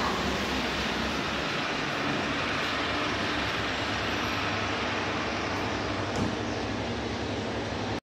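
Steady loud background noise in a lift lobby, with the KONE traction lift's landing doors sliding shut and meeting in a brief knock about six seconds in.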